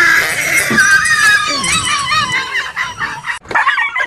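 Dog yelping in fright as a toy tiger is pushed at it: a rapid string of high, wavering cries, with a short break near the end.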